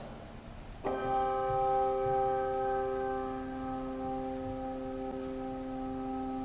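Two brass handbells rung together once about a second in, their tone ringing on and slowly fading: a memorial chime for a name just read.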